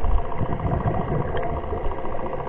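A steady low motor hum heard underwater.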